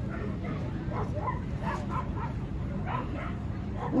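Dogs yipping and barking in short, repeated calls, over a steady background murmur of voices.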